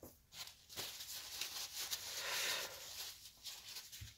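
Rustling and a few soft clicks of hands handling small parts and materials on a desk, working on a laser-cut wooden model.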